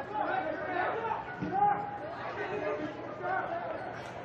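Indistinct chatter of several people talking, with no words clear.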